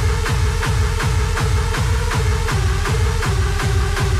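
Hard dance music from a continuous DJ mix: a fast, steady kick drum on every beat under a synth line that steps between a few notes.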